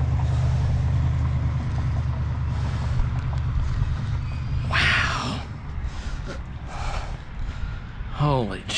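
A road vehicle's engine running with a steady low hum that fades away after about four seconds, and a short hiss about five seconds in.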